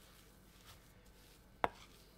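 A wooden spoon knocks once, sharply, against a glass mixing bowl about one and a half seconds in, with faint small stirring sounds before and after.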